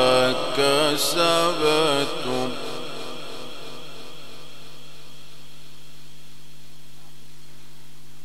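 A man reciting the Quran solo through a microphone in an ornamented, melodic style, his voice wavering and turning in pitch on a long phrase ending that stops about two and a half seconds in. After that, only a steady electrical hum and hiss from the sound system.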